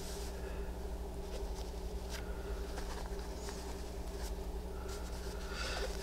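Faint rustling and scraping of fabric as hands slide and press an applique piece into place on a background fabric, with a few soft scratchy touches, over a steady low hum.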